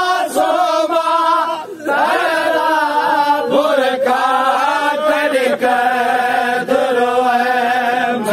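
A group of men chanting a noha, a Shia lament, together in long held melodic lines, with a brief breath pause just before two seconds in.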